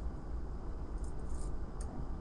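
A few faint light clicks from a small metal padlock being handled, over a steady low background rumble.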